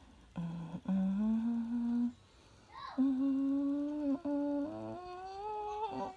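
A person humming a tune in a small room: a few short notes, then long held notes, the last one slowly rising in pitch.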